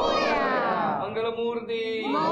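Voices calling out a long devotional cry that slides down in pitch and then holds a steady note; another call starts rising at the very end.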